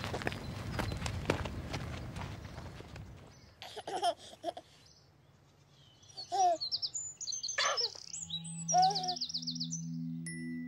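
Footsteps on gravel over outdoor noise. Then a baby giggles and coos four times, with birds chirping in quick high trills, and soft music with low held notes comes in near the end.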